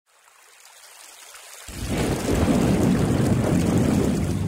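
Thunderstorm sound effect: a faint rain hiss fades in, then a low rumble of thunder starts about one and a half seconds in and quickly grows loud.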